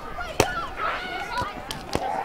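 Sharp slaps of hands striking a beach volleyball during a rally, the loudest about half a second in and just before the end, with players' shouted calls between.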